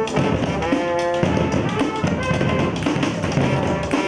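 Brass band playing: tuba, trombones, saxophones, euphonium and trumpet sounding held chords over a steady beat of metal-shelled samba-style drums.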